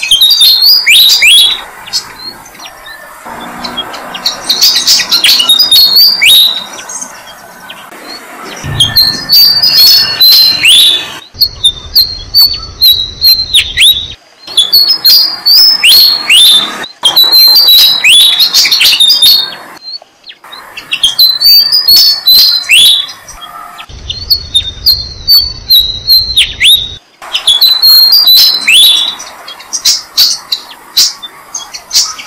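Malaysian pied fantail nestlings chirping in the nest: loud, rapid, high-pitched calls with sharp falling notes. The calls come in repeated bouts of a second or two with short pauses between them.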